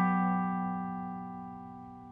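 Tenor guitar tuned GDAE, a G/F# chord ringing out after a single strum and fading slowly and evenly.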